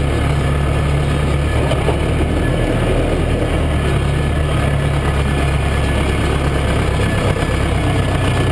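Massey Ferguson 590 tractor's four-cylinder diesel engine running steadily while driving, heard from the cab. Its note shifts slightly a couple of times.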